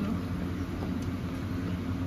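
Steady low hum of an electric fan running, with an even, faint background noise.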